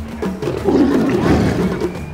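Background music with a steady wood-block-like percussion beat; about half a second in, an Asiatic lion growls roughly for about a second over it while biting at a hanging carcass.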